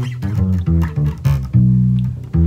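Five-string electric bass plucked with the fingers, playing a quick run of separate low notes and ending on a longer held note: the G minor, F-sharp minor, B minor changes of the song.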